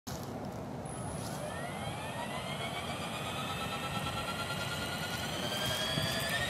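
Electric EXI 450 RC helicopter spooling up on the ground: the motor and rotors give a whine that rises slowly in pitch and grows louder as the main and tail rotors gather speed.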